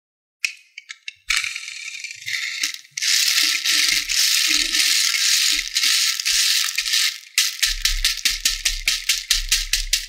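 Small round beads rattling and clattering in a plastic tray as a toy monster truck is pushed through them: a few scattered clicks, then a dense continuous rattle, then quick back-and-forth strokes about five a second near the end.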